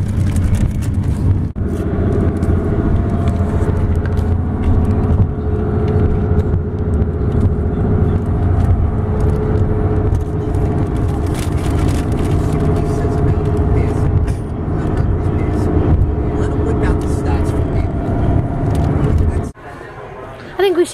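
Cabin noise inside a moving car: a loud, steady low rumble of engine and road noise, which cuts off abruptly just before the end.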